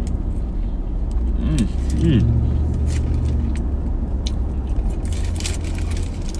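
Steady low rumble of a moving car heard from inside the cabin. Over it, a paper sandwich wrapper crinkles and he chews a bite, with two short hummed 'mm' sounds about one and a half and two seconds in.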